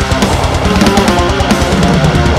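Electric guitar, an ESP LTD EC-256, played through the Mercuriall Metal Area MT-A high-gain distortion plugin: fast heavy-metal riffing over a drum backing.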